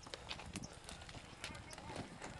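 Footsteps crunching on railway track ballast, a quick irregular series of steps on loose stones.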